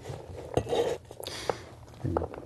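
Kitchen utensils and dishes being handled: a few light knocks and clinks, the sharpest about half a second and a second and a half in, with a brief scrape between them.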